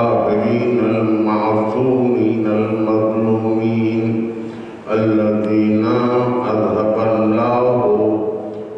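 A man's voice chanting an Arabic sermon opening into a microphone, in long, drawn-out melodic phrases, with a brief pause for breath about five seconds in.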